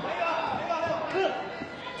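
Boxing arena background of crowd noise and indistinct shouting voices, with dull thuds from the ring.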